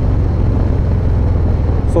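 Harley-Davidson Low Rider ST's Milwaukee-Eight 117 V-twin running steadily while riding at road speed, a low rumble under wind and road noise.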